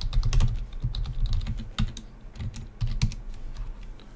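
Typing on a computer keyboard: an uneven run of key clicks with dull thumps beneath them, quick at first and more spaced out after a second or two.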